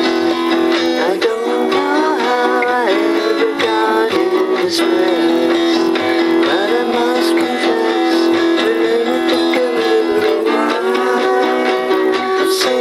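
A man singing a slow song over a strummed guitar.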